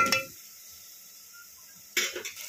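A metal spatula knocks sharply against an aluminium pressure-cooker pot. Then a tadka of oil, onion and tomato sizzles faintly in the pot, and a second sharp knock comes at the very end.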